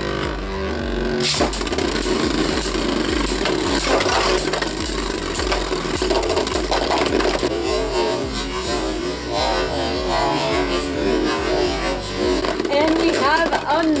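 Background music with a steady beat, over the clicks and clatter of plastic-and-metal Beyblade Burst spinning tops grinding and striking each other in a plastic stadium. Near the end, one top bursts apart.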